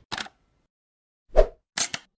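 Logo-animation sound effects: a short click, then a pop about one and a half seconds in, the loudest, followed by two quick high ticks near the end, with dead silence between them.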